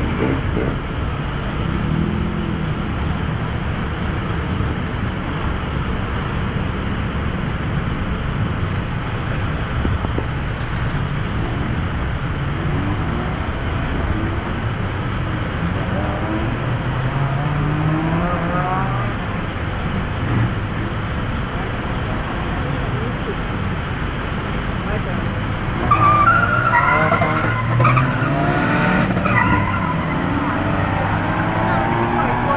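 Steady rumble of car engines in slow, packed traffic, with engines revving up and down around the middle. A louder stretch of repeated high revving comes near the end.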